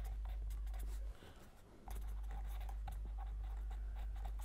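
Pen writing on paper: faint short scratchy strokes over a steady low electrical hum, which drops out briefly a little past a second in.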